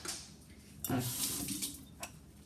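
Kitchen tap running for about a second, starting about a second in, as hands are rinsed under it.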